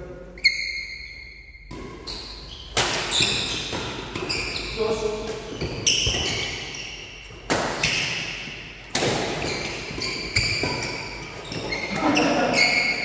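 Badminton rally: rackets strike the shuttlecock about every second and a half, with trainers squeaking on the wooden court floor between shots. The sounds echo in a large hall.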